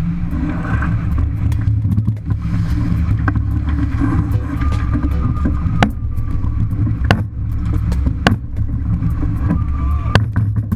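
Wind buffeting the microphone and water rushing along the hull of a racing yacht heeled under sail, a heavy steady rumble. A few sharp clicks of deck gear stand out in the second half.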